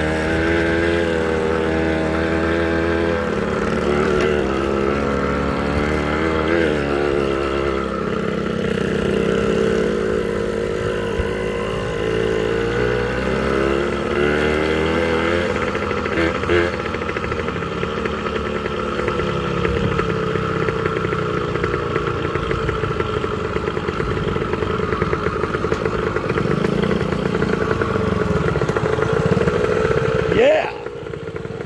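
Small motorcycle engine running under way, its pitch rising and falling with the throttle through the first half, then holding steadier.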